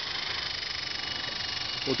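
E-Sky Big Lama coaxial RC helicopter in flight, its twin brushless electric motors and rotors giving a steady whine with a fast, even flutter.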